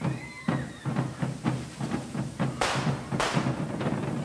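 Drums beating a quick, steady rhythm under the hiss and cracks of carretilles, hand-held spark-spraying fireworks, with two loud sharp bursts about two and a half and three seconds in.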